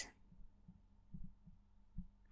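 Very quiet room tone in a pause between narrated lines: a faint steady hum with a couple of soft low thumps, one about a second in and one at the end.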